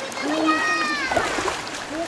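A child's voice calling out in one long call of about a second, over children's voices and water splashing as they swim.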